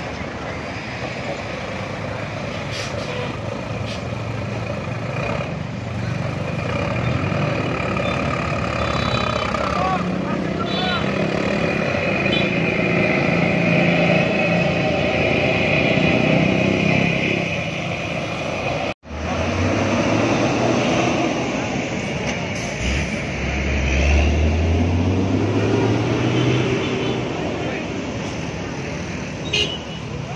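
Tour bus diesel engines running in an open lot, with a short break in the sound about two-thirds of the way through. Soon after the break, one bus engine revs up, rising in pitch over a few seconds as the bus pulls in.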